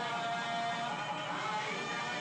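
Ceremonial music on a reed wind instrument over a steady drone. Held nasal notes slide up about one and a half seconds in.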